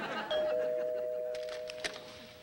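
Two-note doorbell chime, a higher ding followed by a lower dong, ringing on and fading slowly.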